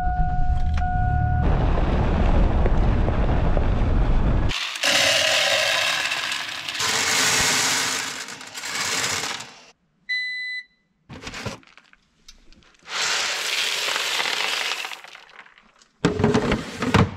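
Soybeans being poured and rattled through a grain moisture tester as a truckload is sampled, in several separate pours with pauses between them, and a short electronic beep about ten seconds in as the reading comes up. A low rumble runs through the first four seconds or so.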